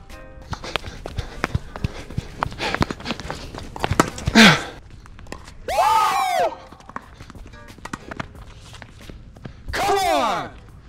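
A tennis rally on a hard court: sharp knocks of the ball off the strings and the court, with quick footsteps. A loud squeal falls in pitch about four seconds in, a longer arching squeal comes around six seconds, and another falls right at the end, all heard as sneakers squeaking on the court surface.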